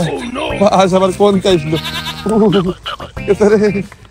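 A man wailing in a shaking, wavering voice: a run of drawn-out cries with short breaks between them.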